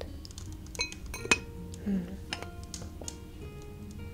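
Glass jars and a stoppered glass bottle clinking as they are handled and set down, with a few light taps and one sharp clink about a second in. Soft background music plays.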